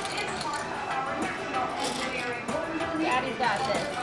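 Indistinct chatter of children and adults in a busy indoor hall, with light clicking of plastic building straws being pushed into connectors.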